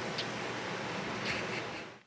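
Steady background hiss with no distinct event, fading out near the end.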